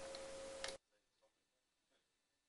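Faint microphone background hiss with a steady hum tone and a single sharp click, cut off abruptly to near silence a little under a second in.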